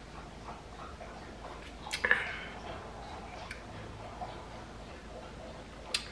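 A woman drinking a spicy ginger shot: faint sipping and swallowing, then about two seconds in a short, sharp vocal reaction after the swallow. A small click comes near the end.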